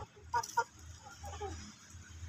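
Backyard desi chickens clucking while they feed: two short, sharp clucks about half a second in, then a few softer clucks falling in pitch around the middle.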